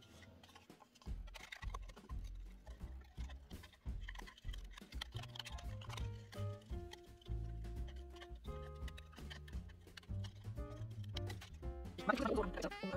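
Background music with a steady bass line and held notes.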